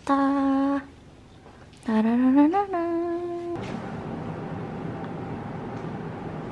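A woman humming two held notes. The first is short; the second slides upward and then holds, stopping about three and a half seconds in. Steady background hiss follows.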